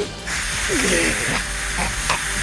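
A harsh hissing, rasping rush, an anime sound effect, lasting about a second and a half, with a man's strained groans under it.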